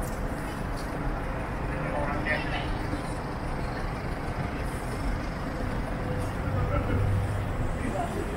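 City street ambience: a steady low rumble of road traffic with passers-by talking. The rumble grows louder for a moment about six to seven seconds in.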